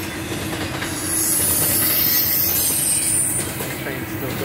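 Double-stack container freight train rolling past at close range, a steady rumble of wheels on rail. A high-pitched squeal from the wheels starts about a second in and lasts a couple of seconds.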